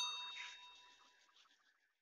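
A single bell 'ding' sound effect for the subscribe overlay's notification bell: one sharp struck ring whose clear tones fade out over about a second and a half.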